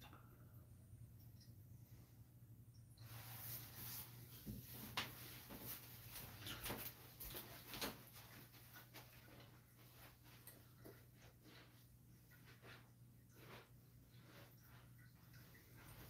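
Faint rustling, knocks and clicks of a person moving about close by, starting about three seconds in and thinning out after the middle, over a steady low hum.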